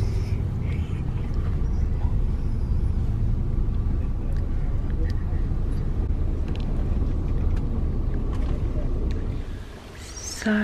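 Steady road and engine rumble heard from inside a moving vehicle's cabin, with a few faint ticks and rattles; it fades out just before the end.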